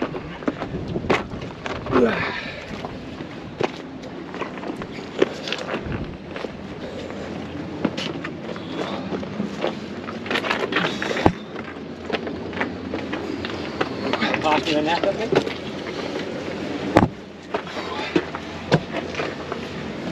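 Footsteps and gear knocking on large rock boulders as someone clambers over them carrying a landing net: scattered sharp clicks and knocks over a steady background hiss, with faint voices now and then.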